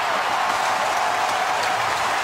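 Ice hockey arena crowd cheering and applauding steadily, reacting to the goaltender's shootout save.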